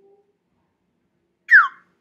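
A short whistle-like sound effect sliding down in pitch about a second and a half in, after near silence: the chime of the lesson animation moving to its next step.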